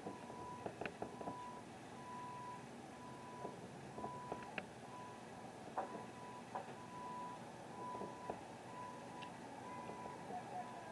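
Faint reversing alarm on construction machinery, a single steady-pitched beep repeating about once a second, with scattered short knocks from the building work.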